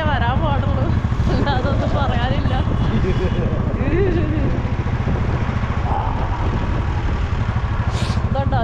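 Motorcycle engine running steadily while riding, a low, even rumble throughout, with a person's voice over it in the first few seconds.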